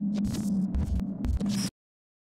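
Electric hum sound effect with low thuds and crackles of static, starting suddenly and cutting off abruptly near the end.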